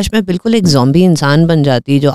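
Speech only: a woman talking into a close microphone in a small studio.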